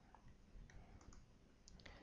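Near silence, broken by a few faint, short clicks of a computer mouse.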